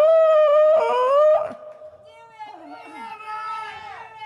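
A woman's voice wailing: a loud, held, slightly wavering note for about a second and a half, then softer falling whimpers. It is a mock imitation of men crying.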